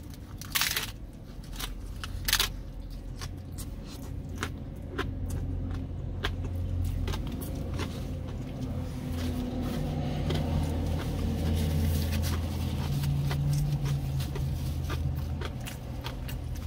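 Crunching bites into a crisp fried tostada shell, two loud crunches in the first few seconds, then chewing with many smaller crackles. A steady low hum runs underneath.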